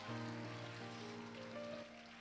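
Soft background music of held chords, with a new chord coming in at the start, over a steady hiss of room noise.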